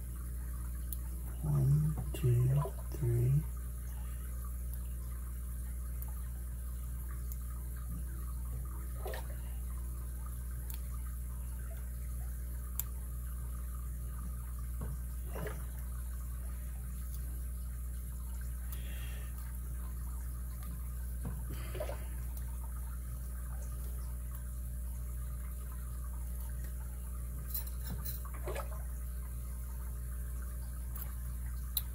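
Faint clicks of a hook pick and tension wrench working the pins of an Abus 72/40 padlock, a few seconds apart, over a steady low hum. A person murmurs three short syllables about two seconds in.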